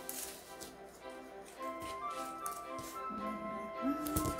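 Soft background music with held notes, over faint taps and rustles of paper sticker sheets being handled.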